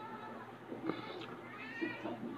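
A cat meowing, with a longer call that rises in pitch in the second half.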